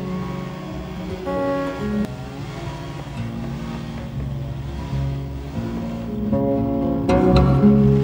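Background folk music on a plucked string instrument, a çifteli, picking a melody over a held low note, with a louder strummed passage near the end.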